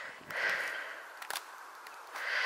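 A raven calling once, a call about half a second long shortly after the start, with a couple of faint clicks in the middle.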